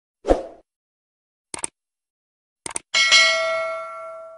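Subscribe-button animation sound effects: a short thump, then two pairs of quick mouse clicks, then a notification-bell ding whose several tones ring on and fade out.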